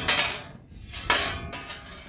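Thin metal sign clanking and rattling as it is handled and set back upright, with a sharp clank at the start and another, briefly ringing, about a second in.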